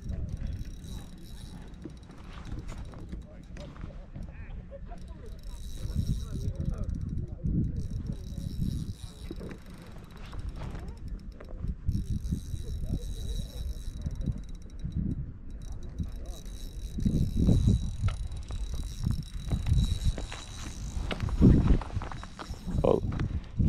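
Spinning fishing reel being cranked with fine clicking as a hooked trout is played on a bent rod, over a steady low wind rumble on the microphone.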